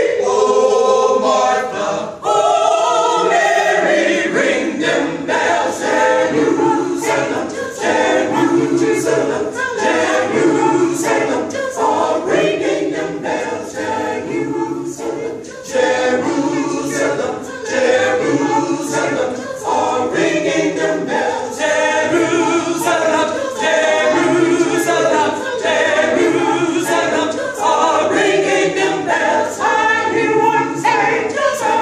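A cappella choir of women's voices singing a rhythmic spiritual in full harmony, with sharp accents falling on a regular beat.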